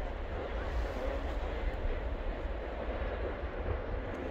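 Steady low rumbling roar with no breaks: wind buffeting the phone's microphone over the roar of an erupting lava fountain.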